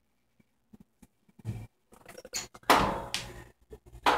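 Kitchen oven door being pulled open: a few small clicks and handling noises, then a single clunk about two-thirds of the way through.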